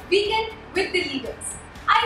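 A woman speaking: the host's voice introducing a guest.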